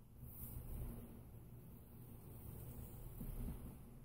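Faint scratching of a felt-tip pen and a plastic Spirograph wheel rolling around the outside of a toothed ring on paper, over a low background hum.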